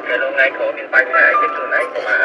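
A person talking, with music playing under the voice.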